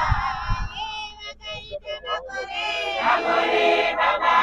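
A crowd of voices singing together in chorus, in short phrases with brief breaks.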